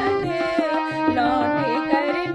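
A woman singing a qawwali melody with ornamented, sliding notes over a steady hand-drum beat in the accompaniment.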